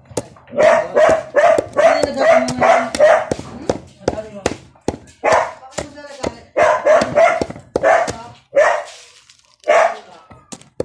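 A dog barking in quick runs of short, high yaps, with the sharp knocks of a pestle pounding resin lumps in a mortar underneath.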